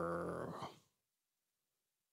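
A man vocally imitating the odd ending of a horse's yell heard at night: one long, drawn-out low call that sinks slightly in pitch and fades out within the first second.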